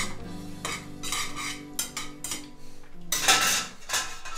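Metal tongs clicking and scraping against a stainless steel frying pan as spaghetti is lifted for plating, with a longer, louder scrape a little after three seconds in.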